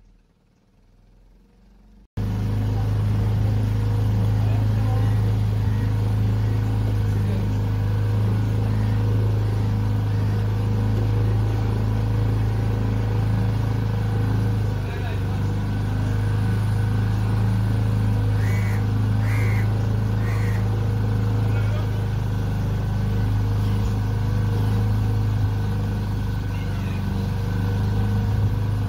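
A small boat's engine running steadily with a deep, even hum, cutting in abruptly about two seconds in.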